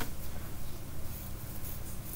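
Quiet room tone with a low steady hum and faint scratchy noise from a computer mouse being moved and scrolled on a desk, with a sharp click right at the start.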